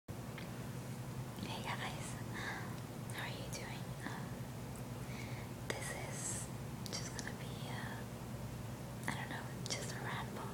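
A woman whispering, soft unvoiced speech with a few small clicks, over a steady low background hum.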